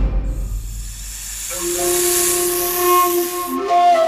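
Long, drawn-out hiss of a giant snake, a dramatic sound effect. Held music notes come in under it about halfway through.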